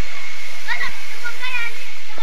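A loud, steady hiss of noise, with two brief, faint wavering voice-like calls in the middle.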